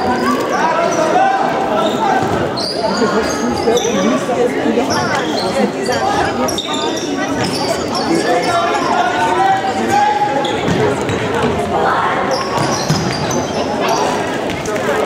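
Indoor football being played in a large, echoing sports hall: the ball being kicked and bouncing on the hall floor, short high squeaks of shoes on the court, and voices calling throughout.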